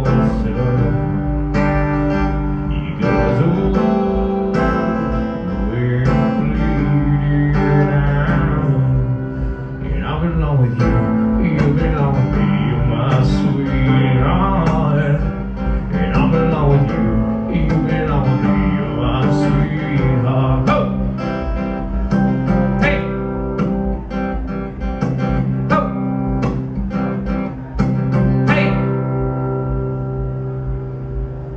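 Steel-string acoustic guitar strummed in a steady rhythm, with a man's voice singing over it through much of the time.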